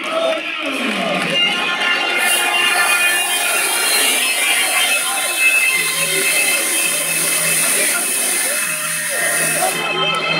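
Loud entrance music over a hall PA. About two seconds in, CO2 stage jets start a steady high hiss that runs over the music and cuts off sharply just before the end.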